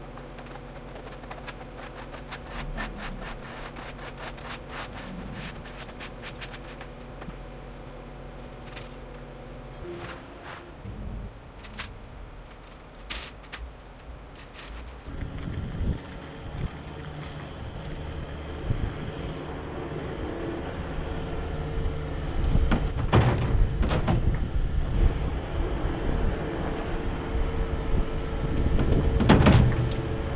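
A long-handled scraper pushed over a wet concrete floor gives many short scrapes. After that a diesel skid steer loader runs and works close by as it loads manure into a manure spreader, with loud heavy hits as the bucket dumps, the loudest near the end.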